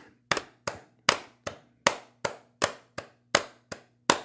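Hands clapping a steady eighth-note rhythm, two claps to each beat of an 80 bpm metronome, about two and a half to three claps a second.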